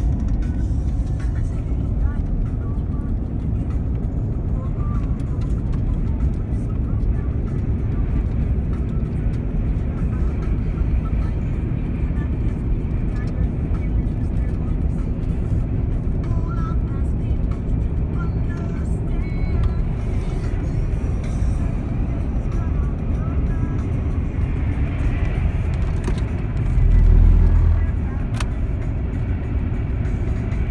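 Road noise heard inside a moving car's cabin: a steady low rumble from the tyres and engine, with a brief louder low thump about 27 seconds in.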